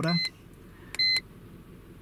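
iCarsoft TYT V1.0 handheld scan tool's key-press buzzer beeping twice, short high-pitched beeps confirming button presses: one right at the start and a second about a second in.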